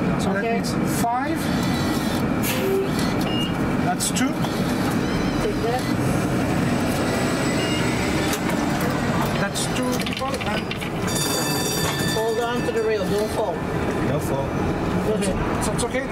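Voices of passengers chatting aboard a streetcar over steady vehicle and street noise, with a brief fast rattle about eleven seconds in.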